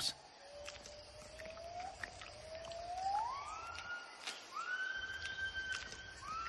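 Gibbon calling: a series of long whooping notes, each sliding upward and then holding, each higher and longer than the one before.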